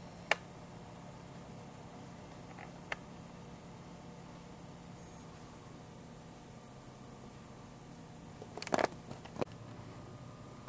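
Low steady hum with a few sharp clicks: one just after the start, one about three seconds in, and a short cluster near the end.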